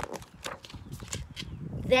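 Pages of a large, stiff picture book being handled and turned: a quick run of taps and papery clicks, then low rumbling handling noise.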